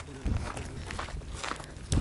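Faint footsteps on stony, gravelly ground, with a low steady background hum.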